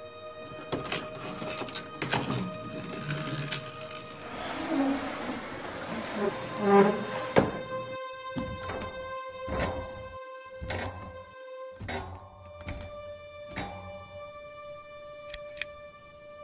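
Tense film score of long held tones over a series of short wooden knocks, about one a second in the second half: footsteps climbing the rungs of a wooden ladder. A thin high tone comes in near the end.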